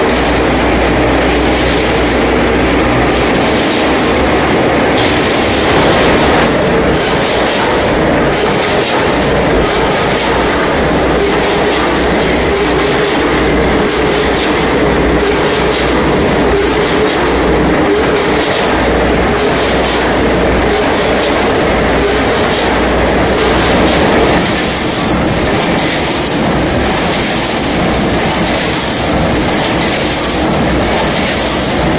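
Automatic rice-cake weighing and packaging machinery running: a continuous loud mechanical clatter with a regular rhythm. The sound changes character about three-quarters of the way through.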